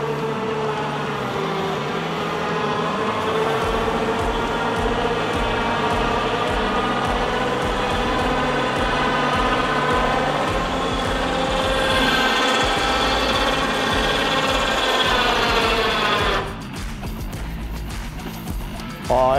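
Electric lift of a Bundutop hard-shell rooftop tent raising the roof: a steady motor whine that stops near the end as the tent reaches full height.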